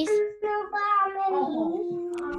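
A child's voice over a video call, singing two long held notes, the second slightly lower than the first.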